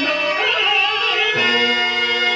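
A voice singing a Telugu padyam, the sung verse of a stage drama, in a wavering, ornamented line over steady harmonium notes.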